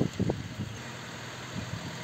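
Tata Zest car's engine running at low speed as the car creeps forward, a steady low hum. A few short low thumps come in the first half-second.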